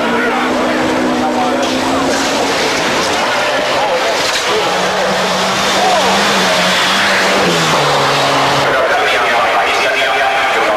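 Rally car engine run hard at speed on a gravel stage, its note stepping down in pitch late on as the car goes by, over crowd noise.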